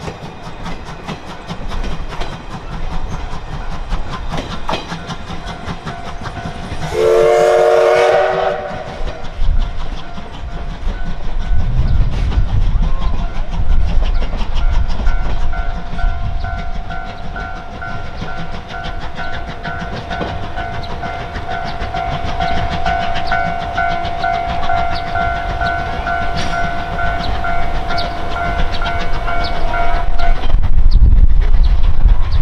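C12 steam locomotive sounds its whistle once, a chord of several tones lasting about a second and a half, then gets its train moving: exhaust chuffs, a low rumble and wheels clicking over the rail joints build up from about ten seconds in. A steady high ringing tone runs through the second half.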